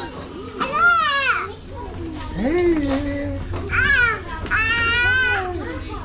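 A baby squealing in the ball pit: three high-pitched squeals, one about a second in and two close together near the end, with a lower vocal sound between them. A steady low hum runs underneath.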